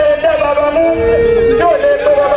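A man's voice chanting a long, wavering, ornamented melody in the style of Islamic praise poetry, sliding between notes without clear words; a second, lower held note sounds briefly about a second in.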